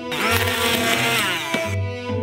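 Small electric grinder or blender running for about a second and a half as it grinds dried herbs to powder, its pitch dropping slightly before it cuts off. Background music plays throughout.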